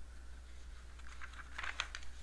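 Faint keystrokes on a computer keyboard, a short run of clicks about a second in, over a low steady hum.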